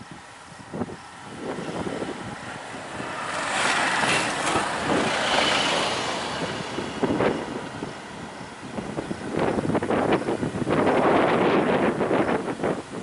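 Motor vehicle noise on a road, swelling a few seconds in and again near the end, mixed with gusty wind buffeting the microphone.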